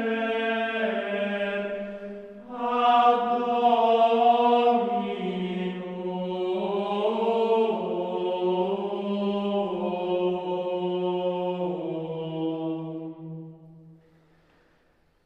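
Gregorian chant: unaccompanied voices singing a slow melody in unison, stepping gently between notes. There is a short breath break about two and a half seconds in, and the phrase dies away near the end.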